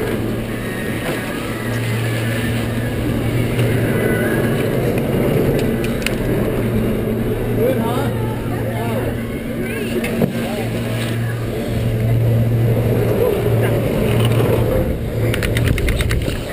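Chairlift terminal machinery running with a steady low hum. There is a quick rattle near the end as the chair pulls out of the station.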